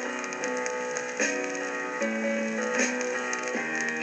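An acetate demo record playing on a turntable: an instrumental passage between sung lines. A melody of held notes changes every half second or so over a light, steady ticking.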